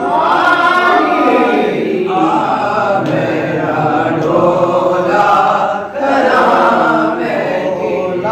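Men's voices singing a naat unaccompanied, in long drawn-out phrases, with a short break for breath about six seconds in.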